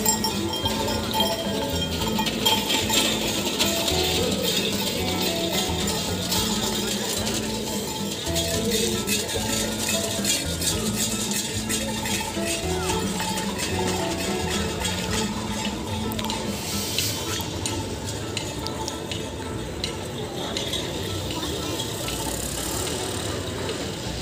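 Background voices and a melody of held, stepping notes that fades after about two-thirds of the way through, over frequent light metallic, bell-like clinking.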